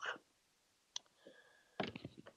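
Faint, sharp clicks: a single click about a second in and a short cluster of them near the end.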